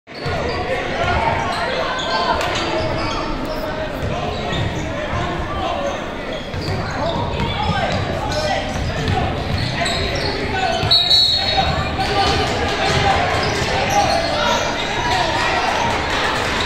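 Basketball game in a large echoing gym: a ball dribbled and bouncing on the court among indistinct shouts and chatter from players and onlookers, with a brief high tone about eleven seconds in.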